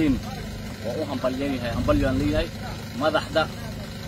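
A man talking in short stretches, with a steady low rumble beneath his voice.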